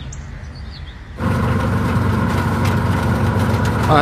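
A vehicle engine running steadily, cutting in abruptly about a second in; before it, a low rumble of street background.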